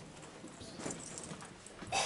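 Scattered short knocks and shuffles of people moving about in a hall, like footsteps and handling noise, with a louder knock about a second in and another at the end.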